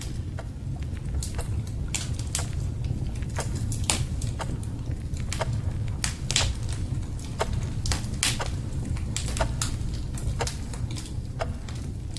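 Crackling log fire: irregular sharp pops and snaps, a few a second, over a steady low rumble.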